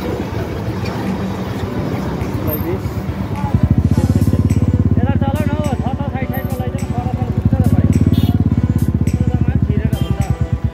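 Motorcycle engine running in traffic, with a dense, rapid low throb that grows louder from about three and a half seconds in.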